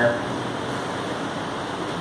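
Steady hiss of room background noise, even throughout with no distinct strokes or knocks.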